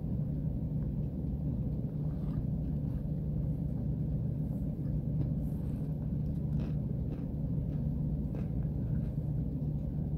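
A steady low rumble throughout, with faint, scattered clicks of chewing on boiled cornstarch chunks over it.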